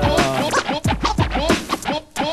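Turntable scratching: a vinyl record pushed back and forth under the stylus, with the mixer cutting it into quick strokes that sweep up and down in pitch over a low bass tone.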